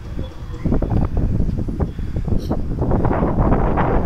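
Wind buffeting the phone's microphone, rising sharply about half a second in and staying strong with irregular gusts.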